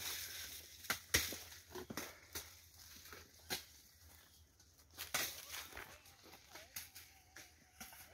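Faint, irregular sharp cracks and snaps of dry, burned sugarcane stalks as the cane is cut by hand.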